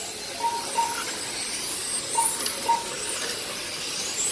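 Radio-controlled touring cars racing: their motors give a high whine that rises and falls as they accelerate and brake, over a steady hiss. Several short beeps sound through it.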